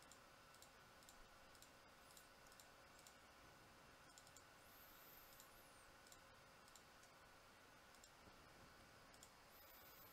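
Near silence with faint, scattered computer mouse clicks, a dozen or so, over a low steady hum.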